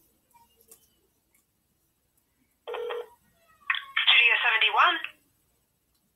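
A phone call heard through a smartphone's loudspeaker, thin and tinny as a phone line is. After a quiet stretch, a short beep or tone sounds about two and a half seconds in. About a second later a voice comes on the line and speaks for over a second.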